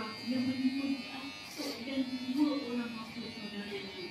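Electric hair clippers buzzing steadily, with a person's voice running beneath.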